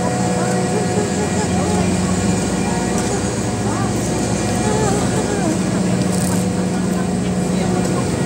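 A steady low mechanical drone with a constant pitch runs throughout, with faint voices of people talking mixed in.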